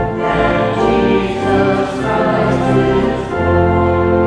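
A choir singing a hymn with instrumental accompaniment, in sustained chords that change every second or so over a steady bass.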